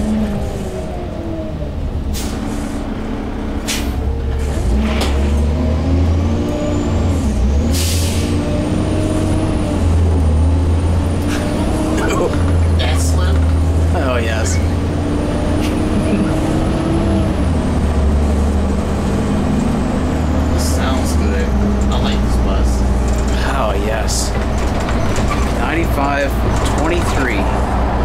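Gillig transit bus's engine and automatic transmission under way from the cab. The engine pitch climbs and then drops back several times as the gears change, through a transmission that slips in second gear. A thin high whine rises and holds through the middle, over body rattles and clicks.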